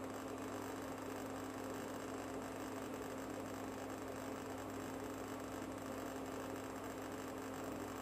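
Induction cooktop running at full power, about 2,000 watts, heating a pan of water: a steady low hum over an even hiss.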